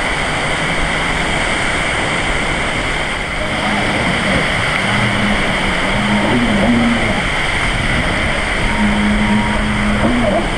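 Jet ski engine running over a steady rush of surf and wind noise, its pitched note coming through more plainly and wavering in the second half.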